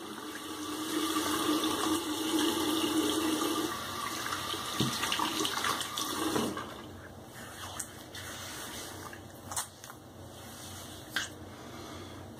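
Bathroom sink tap running as a safety razor is rinsed under it; the water stops about halfway through, followed by a few light knocks.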